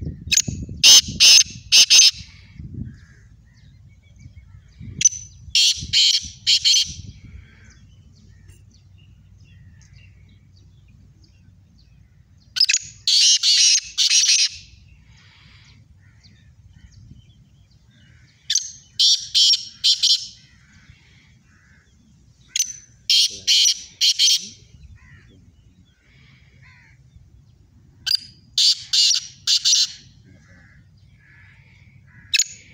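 Black francolins calling in a contest: about six bouts, each a quick run of three or four loud notes, coming every five or six seconds.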